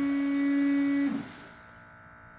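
Electric windshield washer pump on a Volkswagen Beetle running with a steady whine, then winding down and stopping a little over a second in.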